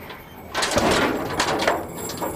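Military truck's canvas cargo cover being hauled open, starting about half a second in: a rough scraping and clattering rush with a few sharp knocks.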